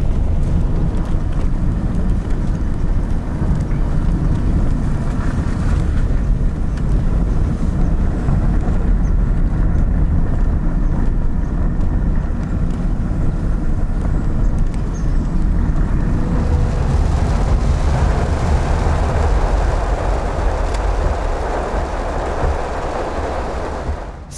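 Steady low rumble of a car driving, heard from inside the cabin: engine and road noise, with a hiss that grows stronger over the last several seconds.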